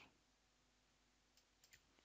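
Near silence: faint room tone, with two or three very faint clicks about one and a half seconds in.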